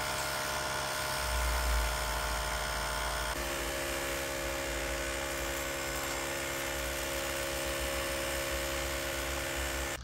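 Ryobi battery-powered chemical sprayer's electric pump running steadily, a small-motor whine with several steady tones, pumping coil-cleaner solution out through the wand onto the condenser coil. The pitch of the whine changes about a third of the way in.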